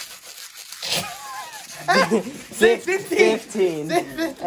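Teenage boys' voices crying out and laughing, gliding up and down in pitch, loud from about two seconds in. Before that, faint scratching from a paper edge being rubbed fast against bare skin.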